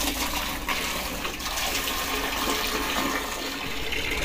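Water running steadily from a flexible hose into a plastic bucket, filling it.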